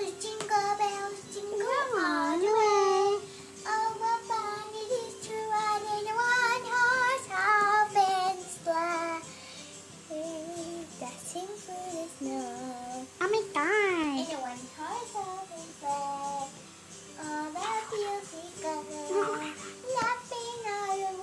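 A child singing a melody in phrases, over background music with a steady held note.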